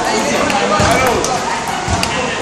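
Several students' voices talking and calling out over scattered sharp clicks of table tennis balls striking paddles and tables.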